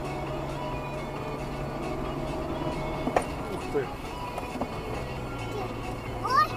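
Steady low drone of a car's engine and tyres heard inside the cabin at about 40 km/h, under faint music from the car radio. A sharp click about three seconds in.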